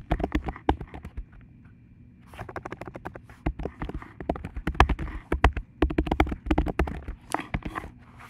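Typing on a computer keyboard: a quick run of key clicks, a pause about a second in, then a longer, fast run of keystrokes.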